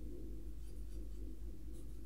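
Faint brushing of a watercolour brush on wet paper, a couple of soft strokes, over a steady low hum.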